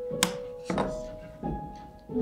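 Soft instrumental music with plucked, piano-like notes. About a quarter second in comes one sharp thunk as a wire soap cutter's frame comes down against its wooden cutting box at the end of a cut through a soap loaf.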